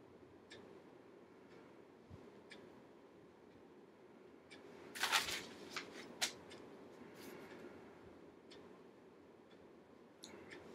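Paper rustling as book pages are handled and turned, with a short louder rustle about halfway through and a few soft clicks.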